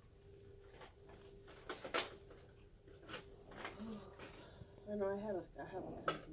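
A steady faint hum with scattered soft clicks and rustles, and a short voice-like sound, wavering in pitch, about five seconds in.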